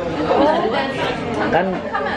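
Speech only: men talking in conversation, with other voices chattering.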